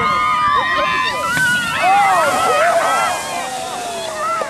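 Several people screaming and shrieking together, their long high screams overlapping, as they ride one sled down a snowy hill.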